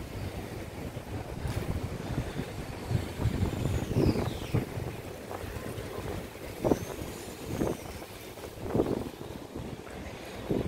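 Wind rumbling on a phone microphone, carried while walking, with a few short louder thumps about halfway through and near the end.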